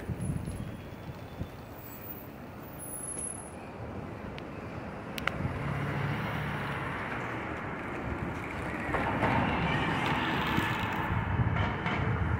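Street traffic on a busy city road: a steady rush of passing vehicles with a low engine hum, swelling louder in the second half.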